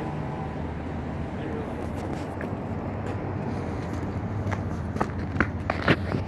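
Outdoor street background with a steady low hum, and several short footstep-like clicks in the last second and a half.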